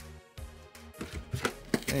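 Light taps and clicks of trading cards and booster packs being handled and set down on a play mat, with a few sharp taps in the second half. Quiet background music runs underneath.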